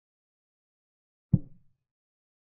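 A single short, low knock of a chess piece being set down: a chess board's move sound effect, a little over a second in, dying away quickly.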